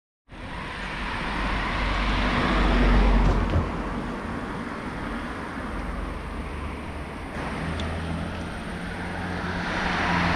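Car passing on a street: its road and engine noise swells to a peak about three seconds in and then fades. From about halfway through, a steady low engine hum as another vehicle comes towards the camera.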